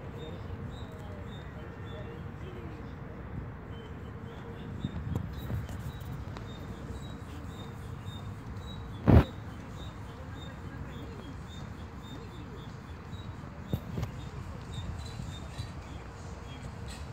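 Steady low outdoor background noise with faint bird chirps, broken by one sharp, loud thump about nine seconds in and a couple of softer knocks around five and fourteen seconds.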